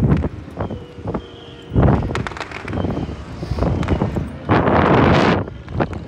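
Wind rushing over the camera microphone as the ride swings the riders through the air. It comes in loud gusts with a low rumble, the strongest about two seconds in and again about five seconds in.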